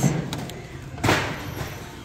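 Ceramic plates knocking and scraping against each other as one is lifted off a stack and turned over: a couple of small clicks near the start, then a louder scrape about a second in that fades out.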